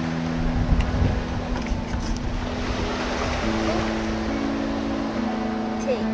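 Wind buffeting the microphone over lapping lake water, with a gust about a second in. Under it runs a low steady drone of two or three held tones that shift in pitch about halfway through.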